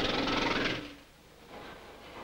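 Steady mechanical rattling noise that stops abruptly just under a second in, leaving only a faint background.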